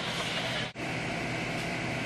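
Steady background hiss of room noise, with no machine running, cut by a brief dropout about a third of the way in.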